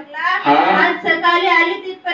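A woman speaking into a handheld microphone in a high voice, without a break.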